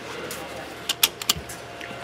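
A few quick, light clicks about a second in, over a faint rustle of handling noise.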